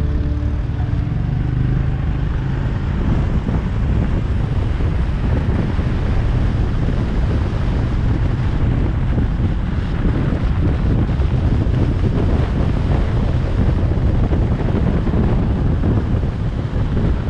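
Loud, steady wind rumble buffeting the microphone, with riding noise from a motorbike underneath.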